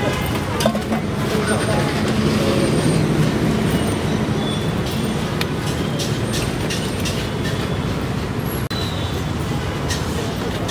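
Steady road traffic noise mixed with background voices, with a few light clinks of steel dishes.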